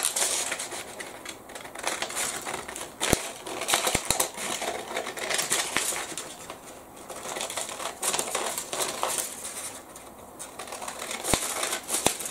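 Paper scissors cutting through folded tracing paper in a run of snips, with the stiff paper crinkling as it is turned, and a few sharp clicks of the blades.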